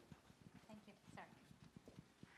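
Near silence in a large meeting room: faint footsteps and small knocks as people move about, with a faint murmured voice.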